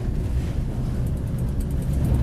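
Steady low rumble of a moving passenger train heard from inside the carriage: the wheels running on the rails.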